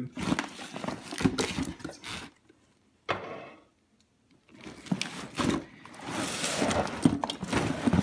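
A car engine wiring harness being handled in a cardboard box: wires and plastic connectors rustling and clicking against the cardboard, with a brief lull a few seconds in.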